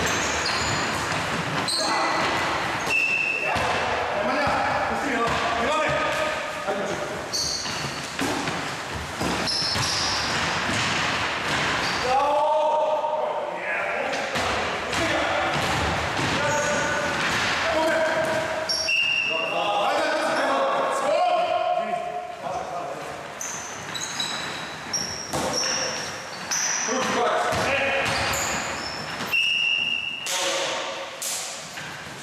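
Basketball bouncing on a wooden gym floor during play, with many short high-pitched sneaker squeaks and players calling out.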